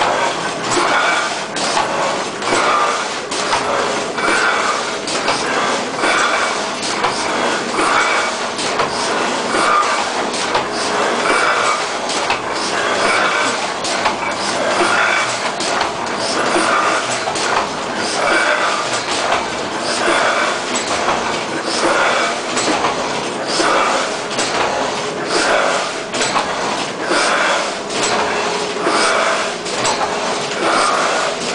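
Vintage Heidelberg Windmill letterpress platen presses running in production: a steady mechanical clatter of clanks and sharp clicks, repeating about once a second.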